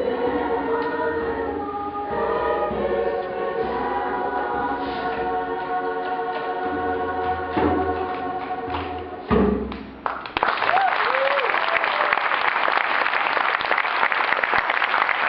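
Children's choir singing long, held notes that end about nine seconds in, followed by the audience breaking into steady applause.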